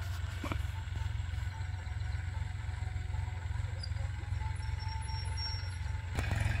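Tractor engine running steadily at a distance, a low, even rumble.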